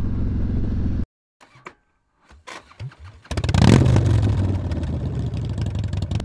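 Motorcycle engine running on the road, cut off abruptly about a second in. After a near-silent gap with a few faint clicks, a motorcycle engine starts up loudly about three seconds in, peaks briefly and then keeps running steadily.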